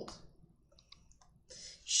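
A few faint, short clicks about a second in, in a quiet pause, then a soft breath just before speech resumes.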